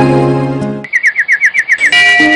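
Background music fades out, then a bird gives a quick run of about seven short, falling chirps in about a second, before the music comes back in at the end.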